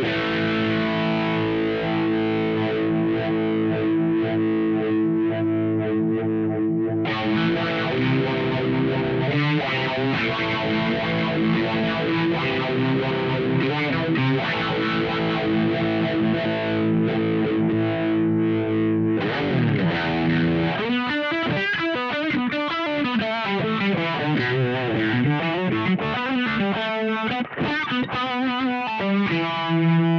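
Electric guitar played through a ROSS Phaser pedal, first in its phase mode. About two-thirds of the way through it is switched to the pedal's univibe mode, and from then on the notes swirl with a slow, deep wavering sweep.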